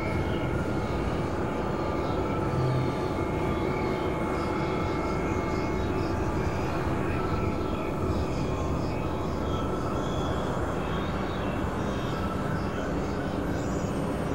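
Experimental electronic noise-drone music made from several music tracks layered at once: a steady, dense rumbling wash with a few faint sustained tones and no clear beat.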